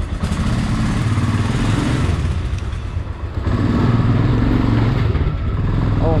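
Royal Enfield Himalayan's single-cylinder engine running, freshly started after standing for 20 days, as the bike rides off. It gets louder a little past halfway.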